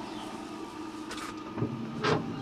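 Brinkmann pellet grill's fan motor running with a steady electric hum just after the power is switched on. A couple of light knocks come in the second half.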